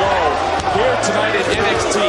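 A referee's hand slapping the wrestling ring canvas in a pin count, a few dull thuds under voices.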